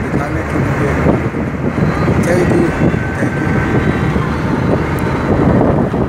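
Steady engine and road noise inside a moving car's cabin, with a man's voice over it.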